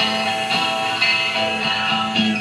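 Guitar music: a chord held and ringing steadily, without singing.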